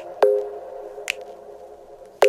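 Background pop music: sparse plucked synth notes that ring out and fade, one just after the start, with a light click about a second in and a quieter gap near the end.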